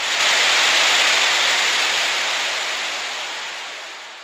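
Loud, even hiss of TV-style static noise used as a transition sound effect. It peaks about a second in, then fades away slowly.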